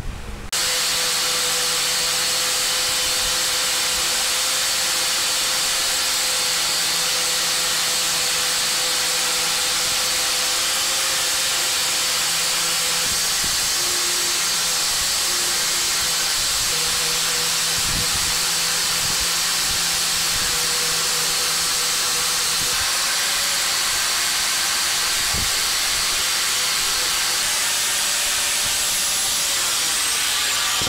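Angle grinder with a fine 400 polishing wheel running against the steel head of an Estwing hatchet: a loud, even hiss over a steady motor whine, starting suddenly about half a second in and holding level without a break.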